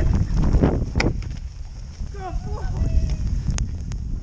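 Storm wind buffeting the camera microphone in a heavy low rumble, with the hiss of a snowboard gliding over snow being pulled by dogs. About halfway through a voice calls out in the distance, and two sharp clicks come near the end.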